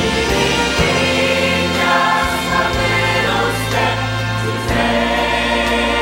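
Church choir singing a gospel hymn with instrumental accompaniment and sustained low bass notes.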